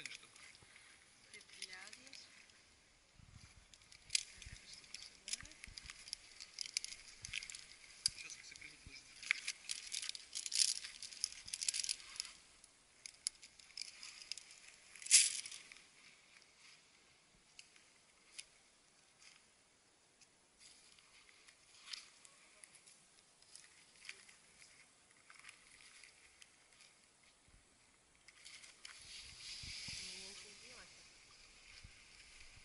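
Climbing rope being handled and pulled while a knot is tied around a pine trunk: a busy run of short rasps, rustles and clicks, with the sharpest one about 15 seconds in, then sparser rustling.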